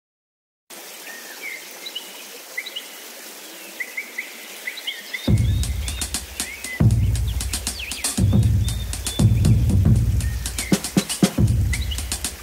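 Opening of an electronic synth-pop track: bird-like chirps over a soft hiss, then about five seconds in a deep bass-heavy electronic beat comes in with clicking percussion, the chirps carrying on above it.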